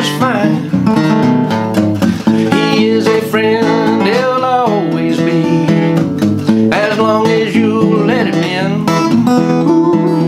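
Acoustic guitar playing chords in a country-gospel song, with a man's singing voice coming in over parts of it.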